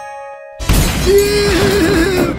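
A short steady electronic tone, then about half a second in a sudden loud cartoon explosion with glass shattering. A long wavering held note rides over the noise.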